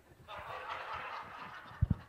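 A soft, diffuse wash of audience noise from the crowd, followed near the end by a couple of short, low thumps.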